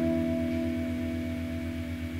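Acoustic guitar chord ringing on after being plucked, slowly fading away.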